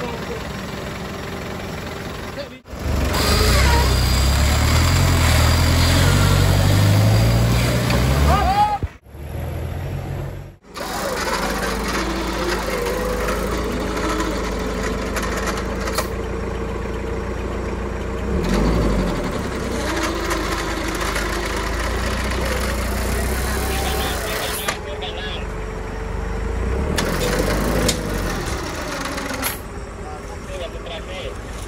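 Off-road 4x4 engines running and revving under load during a night winch recovery, with an electric winch pulling a vehicle up a steep muddy bank. Through most of the second half there is a steady whine, and voices call out over the machinery. The sound cuts abruptly twice in the first ten seconds.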